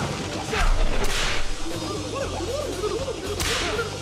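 Fight-scene sound effects: quick whooshes of swung punches and kicks, three in all, and a low thud of a landed hit about half a second in.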